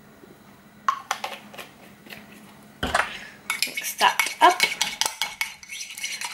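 Metal spoon clinking and scraping against a ceramic mug as yogurt is stirred: a few scattered clinks and a heavier knock at first, then about halfway through a run of quick, steady stirring.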